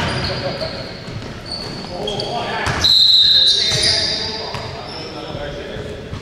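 Basketball game on a hardwood gym floor: ball bounces and short sneaker squeaks, then about halfway through a referee's whistle gives one sharp, steady blast of under a second, the loudest sound, in a reverberant gym. Players' voices call out around it.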